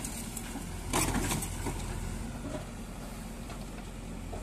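JCB backhoe loader's diesel engine running steadily, with a brief louder noise about a second in.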